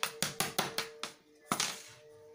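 Sharp clicks of wooden carrom pieces and the striker knocking against each other and the board: about six clicks at uneven spacing in the first second and a half.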